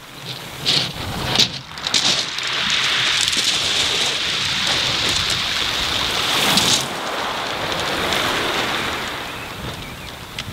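Small waves breaking and washing over a shingle beach: a steady hiss of surf that builds a couple of seconds in and eases off about seven seconds in, with a few short crackles near the start.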